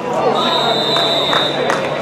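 Referee's whistle blown once, a steady high tone lasting about a second and a half, stopping the play. Voices chatter on the sideline throughout.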